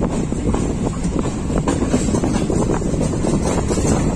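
Moving passenger train heard from inside a coach at the open window or door: a steady rumble with irregular wheel-and-rail clatter, and wind on the microphone.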